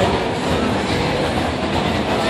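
Steady, fairly loud background noise of a busy street: a continuous rumbling haze with faint voices mixed in.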